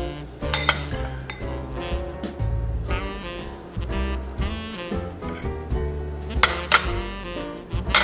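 Background music, with a metal spoon and fork clinking against a ceramic bowl while chopped peanuts are spooned over a banana piece; a few clinks come about a second in and more near the end.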